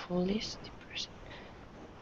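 Quiet speech over a video-call line: one short murmured syllable, then two brief whispered hisses while someone thinks of an answer.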